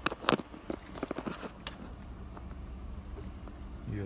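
A burst of small plastic clicks and rattles as a USB plug is handled and pushed into a USB cable's socket, during the first second and a half, over a low steady hum.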